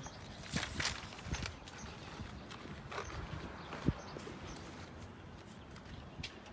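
Large spiral-bound chart paper pad being handled against a wall: a sheet turned and smoothed flat, with papery rustles and a few light knocks, the sharpest about four seconds in.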